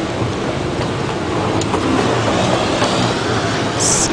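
Steady mechanical rumble with a faint rhythmic clatter from an airport moving walkway, with a brief high hiss near the end.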